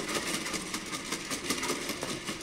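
Electric torque-controlled quadruped robot dog running, with a steady mechanical noise from its leg servo motors; it is quite noisy.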